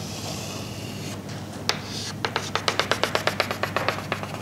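Chalk on a blackboard: a soft scraping stroke, then, past the middle, a quick even run of sharp taps, about seven a second, as the chalk strikes the board.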